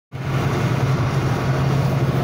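Steady road and engine noise inside a moving car's cabin, with a constant low drone.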